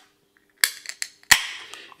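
Ring-pull tab of a 330 ml aluminium can of lager being cracked open: two sharp cracks about 0.7 s apart, each trailing off in a short hiss of escaping carbonation gas, with small clicks of the tab between them.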